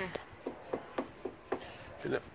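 Knuckles knocking on wood for luck, about six short, sharp raps spaced unevenly.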